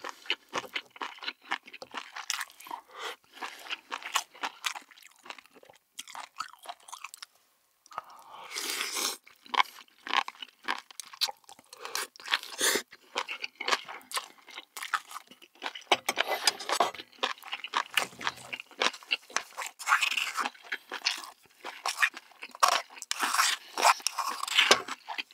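Close-miked mouth sounds of someone eating braised seafood: a dense, uneven run of short wet clicks and smacks of chewing and biting, with a brief pause about seven seconds in.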